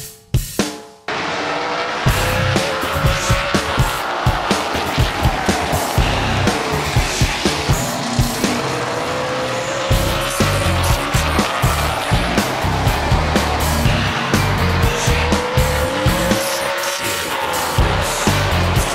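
Super late model stock cars' V8 engines racing past, their engine note rising slowly three times as the cars accelerate. Music with a steady drum beat runs over the track sound.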